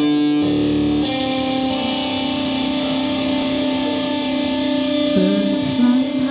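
Live band music: electric guitars play under a long held note that drops in pitch about five seconds in.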